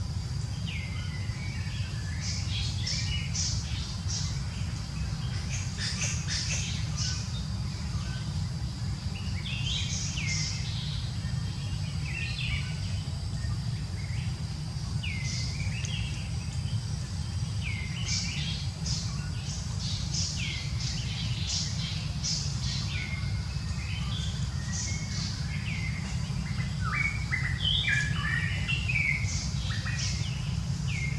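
Small birds chirping, with many short, quick calls and hooked notes repeated throughout, over a thin steady high tone and a low, even background rumble.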